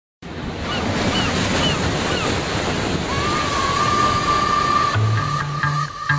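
Steady sound of ocean waves and surf, with four short high chirps early on. About halfway a held synth note comes in, and a bass line starts near the end as an electronic dance track begins.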